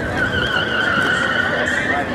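Tyres of a Ford Fiesta ST squealing as the car corners hard: one steady, slightly wavering squeal that starts just after the opening and lasts about a second and a half.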